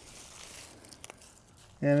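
Faint crackling rustle of dry, dead hosta leaves being grabbed and pulled up by hand, with a few small crackles about a second in.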